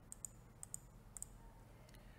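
Faint computer mouse button clicks: about three quick pairs of sharp clicks over quiet room tone.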